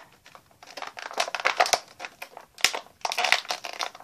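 Plastic toy packaging crinkling and crackling in irregular bursts as an action figure is worked out of its box tray.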